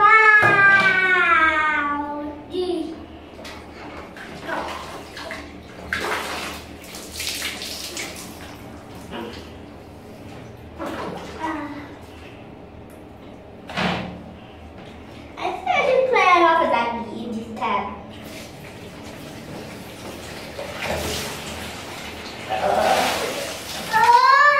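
Water splashing and being tipped out of a plastic tub, in several short splashes over a low running-water noise, with a child's wordless vocal calls at the start, about two-thirds of the way through, and at the end.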